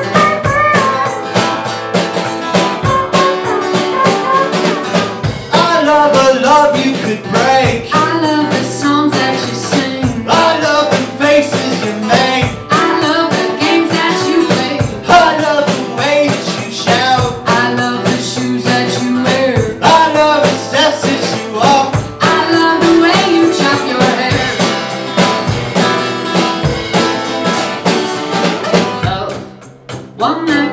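Live indie folk song: acoustic-electric guitar strumming, with a sung vocal and a steady beat played on a homemade kit of upturned 5-gallon paint buckets and cymbals. The music drops away for a moment near the end.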